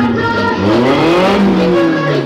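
Car engine revving: its pitch climbs for about a second and then falls back near the end, over music.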